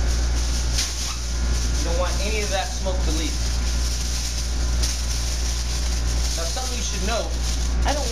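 Aluminium foil being crinkled and pressed around a pan, over the steady low hum of a commercial kitchen's ventilation.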